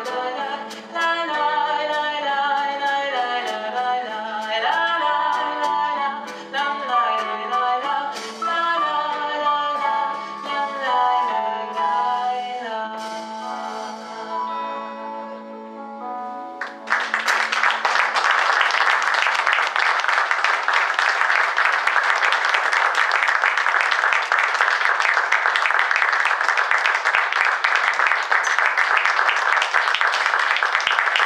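A woman singing with a small jazz band of piano, drums, double bass and guitar, closing an Abruzzese folk song arranged in jazz style on a long held final note that fades. About halfway through, the audience breaks into loud, steady applause.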